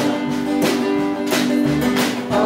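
Live blues band playing, led by an acoustic guitar strummed in even strokes about every two-thirds of a second over bass and held notes.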